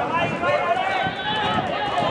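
Several voices shouting at once during a football match, overlapping so that no words come through clearly.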